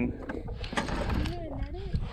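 Fishing reel being cranked as a hooked bass is reeled in, a light mechanical sound with a few clicks, over low wind rumble on the microphone.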